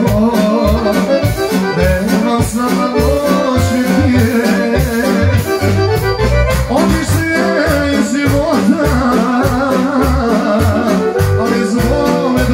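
Live folk dance music from a wedding band, led by accordion over a steady, even bass beat.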